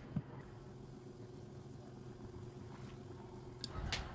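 Faint, steady bubbling of a water-and-meatball broth simmering in a frying pan on a gas stove, with two short clicks near the end.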